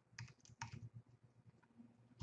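Computer keyboard typing: a quick run of faint keystrokes, thicker in the first second and thinning out after.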